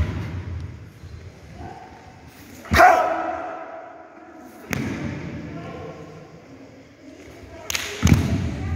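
Karate kata Heian Godan performed by two karateka: a short, loud kiai shout about three seconds in, ringing in the hall. Sharp snaps and thuds from their movements follow about two seconds later and again near the end.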